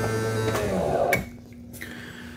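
Electric motor of an RV bedroom slide-out humming steadily, then cutting off about half a second in with a brief falling whine as it winds down, followed by a single click.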